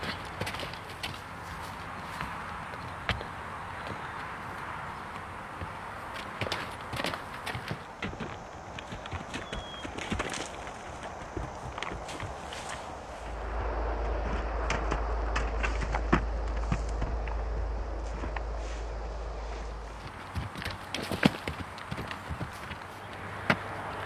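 Hooves of a saddled two-year-old horse on dirt and rock as it scrambles up and over a rocky mound, irregular knocks and thuds with scuffing footsteps. A low rumble sits under it for several seconds in the middle.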